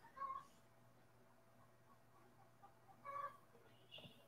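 Near silence broken by two faint cat meows, one just after the start and one about three seconds in.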